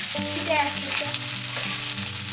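Chopped onions sizzling steadily in hot oil in an aluminium kadai, freshly added to the oil, while a wooden spoon stirs them.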